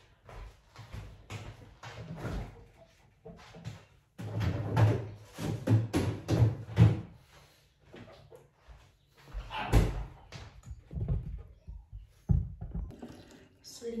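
Household refrigerator door being opened and shut, amid footsteps and handling knocks; the loudest thump comes about ten seconds in, with another sharp knock about two seconds later.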